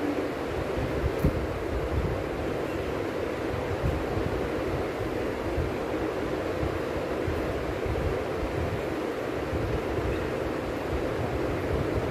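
Steady rumbling noise with hiss above it, even and unbroken, like wind on a microphone, with one faint knock about a second in.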